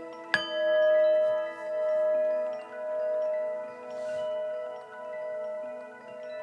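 A singing bowl struck once about a third of a second in, its tone ringing on and slowly fading with a steady wavering pulse about once a second. Soft ambient music with mallet tones plays underneath.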